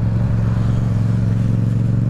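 Yamaha MT-07's 689 cc parallel-twin engine, fitted with an Akrapovič exhaust, running steadily at a constant cruise with no rise or fall in revs, heard from the rider's seat along with wind and road noise.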